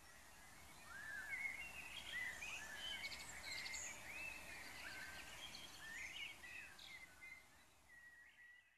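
Faint birdsong: birds chirping and calling in short, quick arched notes, starting about a second in, over a low steady background hiss.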